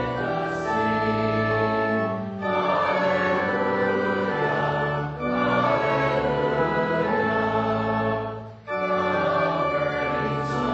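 Congregation singing a hymn with organ accompaniment, in held notes broken by short pauses between phrases about every three seconds.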